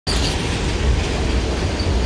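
Water pouring through a dam's partially open spillway gates and churning in the outflow below: a loud, steady rushing noise with a strong low rumble.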